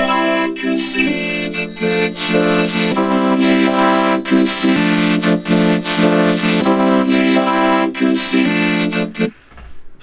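Vocoded vocal from FL Studio's Vocodex: a synth chord sings the words of a vocal sample, holding chord pitches that break with the syllables. Its tone shifts as the vocoder's bandwidth knob is turned during playback, and it stops about a second before the end.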